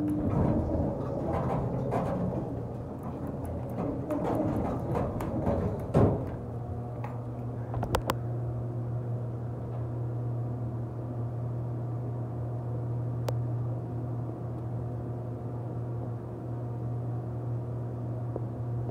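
Westinghouse hydraulic elevator in service: a thud about six seconds in, typical of the car door closing, then a steady low machine hum while the car travels.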